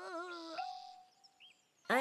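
A cartoon girl's long wailing cry, sliding down in pitch and trailing off about half a second in. A faint held musical note follows, then near quiet.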